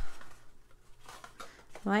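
Faint rustling of cardstock and paper being handled as a small paper treat box is folded closed, after a brief low thump right at the start. A spoken word comes near the end.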